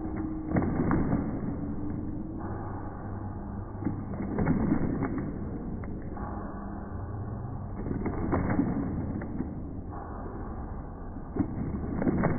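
An audience clapping, with sharp knocks among the claps and the loudness swelling up and down about every four seconds.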